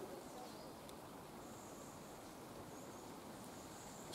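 Faint, quiet outdoor ambience: a low steady background hiss, with a thin high-pitched whistle-like tone coming and going from about a third of the way in.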